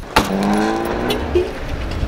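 A car engine going by on the street, its pitch steady and rising slowly as it accelerates, fading after about a second and a half.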